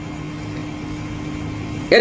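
A steady low hum with a faint hiss, in a pause between speech.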